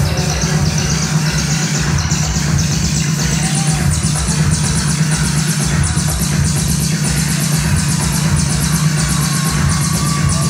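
Loud electronic dance music from a live DJ set, heard through a phone's microphone: a heavy, steady bass line under a rapid hi-hat pattern, with a high noise sweep rising over the first few seconds as a build-up.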